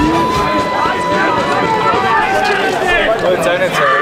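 Several voices shouting and cheering over one another in a football goal celebration, with one long held note for about the first two seconds.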